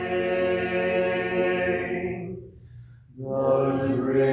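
Congregation singing a hymn a cappella: a long held note fades out about two seconds in, and after a short pause the singing starts again a little past three seconds.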